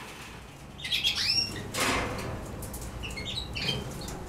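Canary nestlings begging: thin, high cheeps in a cluster about a second in and again near the end, with a brief rustle around the middle.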